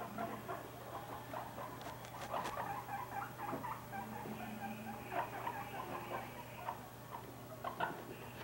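Two long-haired guinea pigs moving about on carpet: quiet, scattered patter and small clicking sounds, with a few sharper clicks a couple of seconds in.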